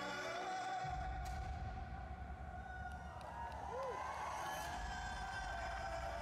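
Faint male singing voice from the playback holding long, slowly wavering notes, with a low rumble of hall sound coming in underneath about a second in.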